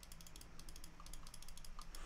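Faint, rapid clicking of computer keyboard keys being typed, over a steady low electrical hum.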